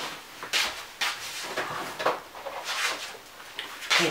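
Objects being handled and rummaged through: a run of about six brief rustling swishes and scrapes.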